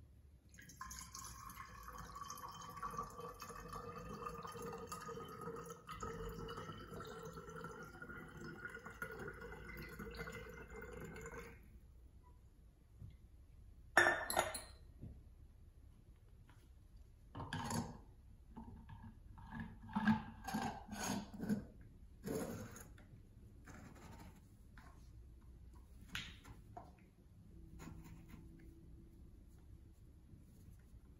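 Sugar-water nectar poured from a steel saucepan through a small funnel into a glass feeder bottle, a steady trickle whose pitch rises slowly as the bottle fills, stopping after about eleven seconds. Then a few sharp clinks and knocks of metal and glass as the pot is set down and the feeder parts are handled.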